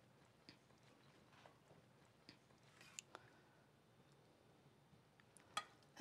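Near silence, with a few faint soft ticks and rustles of hands pressing slices of bread down into a ceramic baking dish.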